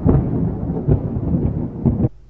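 Loud, deep rumbling sound effect like thunder, starting suddenly and cut off abruptly near the end.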